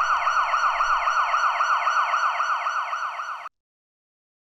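Emergency-vehicle siren in its fast yelp mode: a rapidly repeating rising sweep, several a second, loud and steady. It cuts off suddenly about three and a half seconds in.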